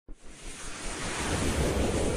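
A whoosh sound effect from an animated logo intro: a dense rushing noise that starts suddenly and swells steadily louder.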